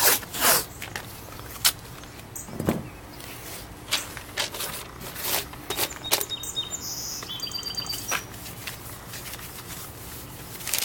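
Blue painter's tape being pulled off the roll and torn into strips while masking a car door, heard as a run of short rasps and snaps, with some high, squeaky chirps in the middle.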